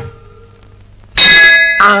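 A bell sound effect strikes suddenly about a second in and rings on briefly with a bright ding. It is the chime of a notification-bell graphic.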